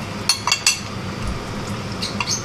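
A metal fork clinking against a ceramic plate while cutting open a fried croquette: three quick clinks within the first second, over a steady low hum.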